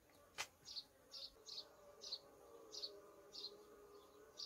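Faint steady buzzing of a honey bee colony swarming over a frame lifted from an open hive. A sharp click sounds just under half a second in, and a faint high chirp repeats about twice a second throughout.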